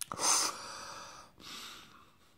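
A man breathing out hard through his mouth, one long breath and then a shorter, fainter one, reacting to a sip of a very strong imperial stout.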